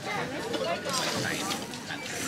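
People talking in the background, a mix of diners' voices.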